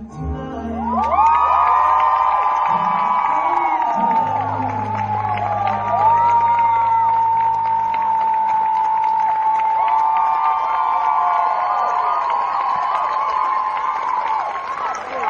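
As the song's final chord ends, a live studio audience breaks into loud cheering with high-pitched screams and whoops, recorded from among the crowd. A low held note of the accompaniment lingers under the cheering for a few seconds.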